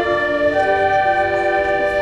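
School concert band playing a slow passage of held notes, with clarinets prominent.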